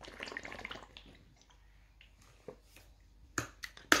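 Water being sipped and swallowed through the spout of a plastic water bottle for about the first second, followed by a few sharp clicks near the end.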